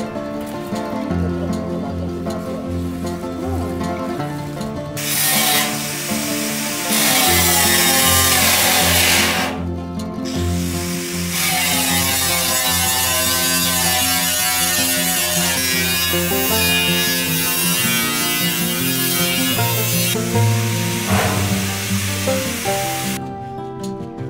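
Background music, with an angle grinder cutting through a steel drum heard as a harsh hiss in two stretches: from about five to nine seconds in, and again from about eleven to twenty seconds.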